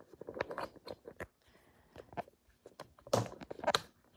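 Handling noise of a smartphone being fitted and adjusted in its clip mount: a scatter of small clicks, taps and scrapes, the loudest two about three seconds in.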